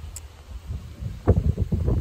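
Wind buffeting the phone's microphone: a low rumble that gusts stronger after about a second.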